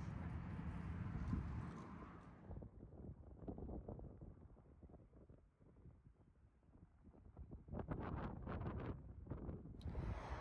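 Faint outdoor ambience with wind on the microphone: a low rumble that fades to near silence midway, then gusts of wind buffeting the microphone near the end.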